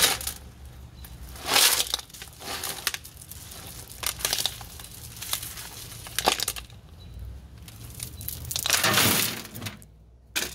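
Loose landscape rock crunching and clattering in several separate bursts, the longest near the end, as the rock is being dug out and moved.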